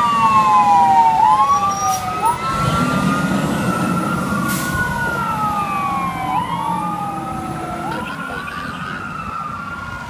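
Fire engine siren wailing in slow, overlapping rising and falling sweeps over the truck's engine rumble, growing fainter as the truck drives away.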